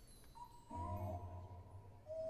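Faint background music between acts: a few held notes come in about half a second in, joined by a low bass note, and fade just before the end.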